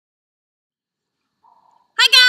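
Near silence, with a faint, brief hiss near the end.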